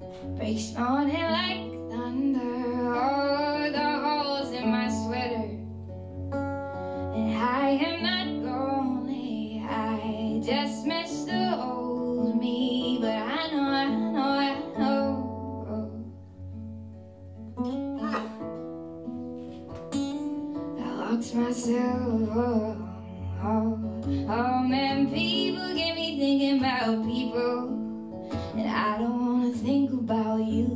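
A woman singing live to her own acoustic guitar. Sung phrases are broken by a few short stretches where only the guitar plays.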